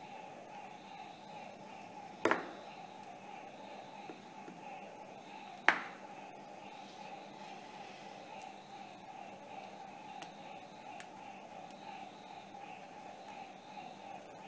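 Two sharp knocks, about three and a half seconds apart, of hard plastic toy figurines set down on a glass tabletop, over a steady background hum.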